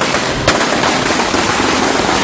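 Firecrackers going off in a rapid, unbroken run of loud cracks, with one sharper bang about half a second in.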